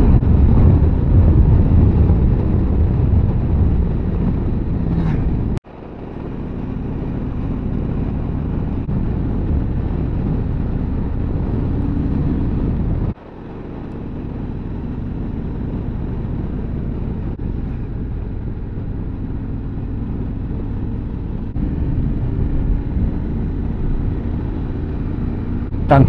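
Yamaha Ténéré 700 parallel-twin engine running at a steady cruise, mixed with wind and road noise at the bike's camera. The sound cuts out abruptly twice, about five and a half seconds in and about thirteen seconds in, and fades back up each time.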